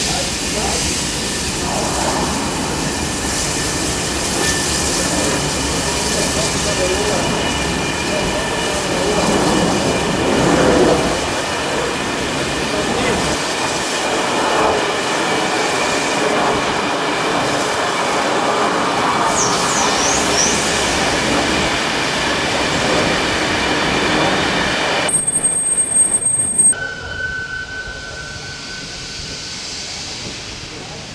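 Passenger coaches of a steam-hauled train rolling slowly past, their wheels squealing steadily on the rails.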